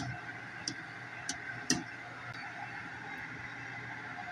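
A glass pot lid lightly clinking a few times against the rim of an aluminium pressure cooker, over a steady low hum.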